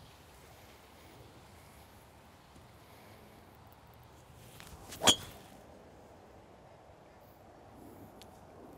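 A golf driver striking a ball off the tee: a single sharp metallic crack with a short ring, about five seconds in, just after a faint swish of the downswing.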